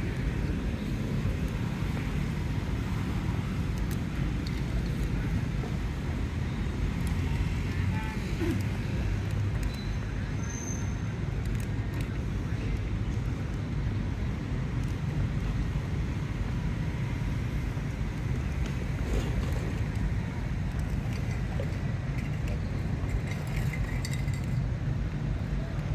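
Steady low rumble of outdoor background noise on an open seafront, with no distinct events standing out.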